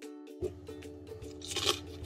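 Background music with steady held notes; near the end, one short crunch of a bite into a fresh vegetable rice paper roll.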